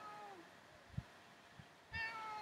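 A cat meowing: a faint meow that falls in pitch at the start, and a louder meow beginning right at the end. A soft low thump about halfway through.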